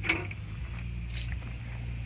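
Outdoor background: a steady low hum under a steady thin high tone, with a light handling click at the start and a fainter one about a second in.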